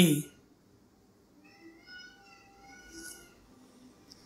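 A faint, drawn-out pitched call in the background, lasting about two seconds and wavering slightly in pitch.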